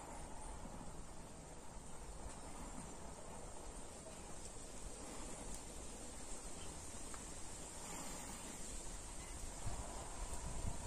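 Faint rural outdoor ambience: a low rumble of wind on the microphone under a steady high hiss of insects, with a single brief bump near the end.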